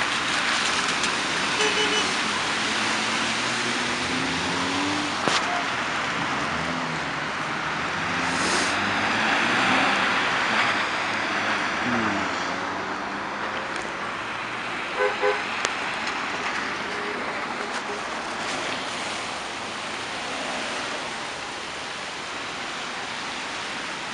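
Road traffic on wet, slushy pavement: steady tyre hiss with car engines pulling away through the intersection, and two short car-horn toots about fifteen seconds in.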